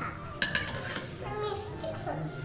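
Steel spoon clinking and scraping in a bowl. A sharp clink about half a second in is followed by a few lighter clinks.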